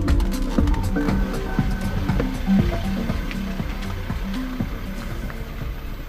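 Background music with a steady beat and held notes, gradually fading out.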